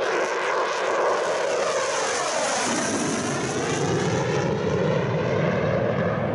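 Loud, steady jet aircraft engine noise heard from inside a cockpit. Its whooshing tone sweeps downward over the first few seconds, then drifts back up.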